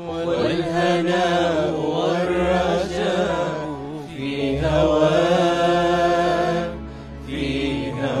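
A solo voice singing a slow, ornamented melody in long, wavering held phrases over acoustic guitar accompaniment, with a short break between phrases near the end.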